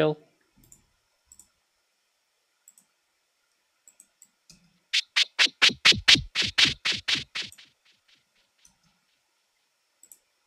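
Resampled white-noise synth hits played back as a rapid rhythmic stutter, about fifteen noise bursts in two and a half seconds starting about halfway through, processed through a filter and a delay.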